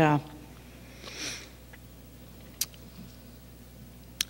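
A woman sniffing once, about a second in, then a single faint click near the middle, over a low steady hum.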